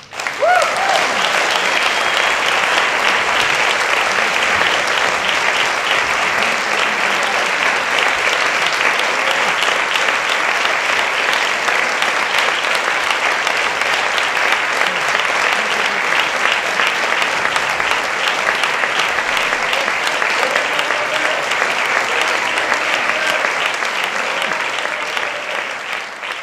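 Audience applauding steadily and loudly at the end of a wind band concert piece, with a brief cheer or whistle in the first second. The applause thins out near the end.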